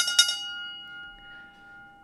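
A bright bell-like chime, struck a few times in quick succession at the start, then ringing on and slowly fading.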